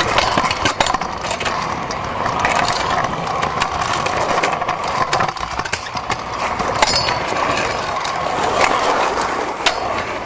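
Stunt scooter's small wheels rolling over rough concrete: a steady rumble broken by frequent clicks and knocks from the deck and wheels, with louder knocks about seven seconds in and near the end.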